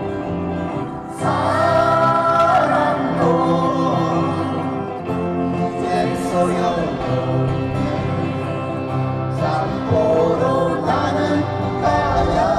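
Live male singing over strummed acoustic guitar, amplified through a stage microphone and PA, sung in phrases that start about a second in.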